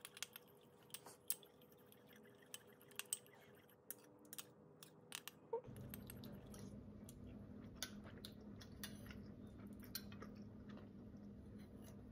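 Near silence, broken by scattered faint clicks of a metal spoon stirring chili in a small ceramic bowl to cool it. About halfway through, a faint low steady hum sets in under the occasional click.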